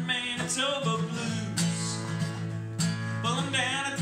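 Acoustic guitar strummed in a steady country-blues rhythm, with a short vocal line about half a second in and again near the end.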